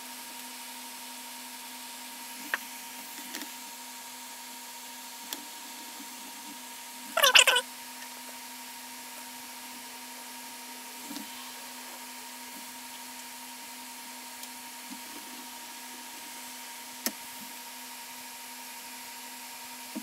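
Hot air rework gun blowing steadily at low heat, a constant even hum. About seven seconds in there is one short, loud, high squeak, with a few faint clicks elsewhere.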